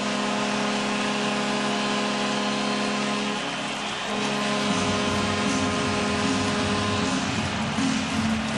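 Ice hockey arena goal horn sounding one long, steady note over a cheering crowd, signalling a home goal. The sound grows fuller in the low end about five seconds in.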